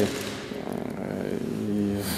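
A man's drawn-out hesitation sound, an 'uh' held on one steady pitch through the second half, in a pause between spoken phrases.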